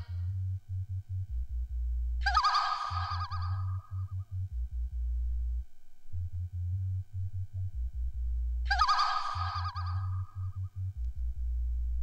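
Breakdown in a breakbeat DJ mix: the drums drop out, leaving a chopped deep bass line with a steady rhythm. Twice, about two seconds in and again near nine seconds, a warbling, honking synth or sampled phrase plays for about two seconds.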